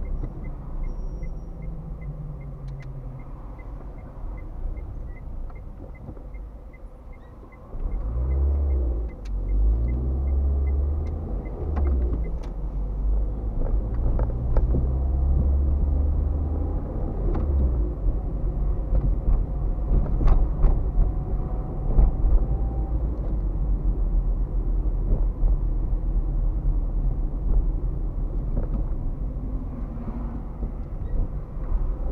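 Car engine and road noise heard from inside the cabin, with a turn-signal indicator ticking about twice a second for the first twelve seconds or so. About eight seconds in the engine gets louder as the car accelerates, and it keeps running with road rumble after that.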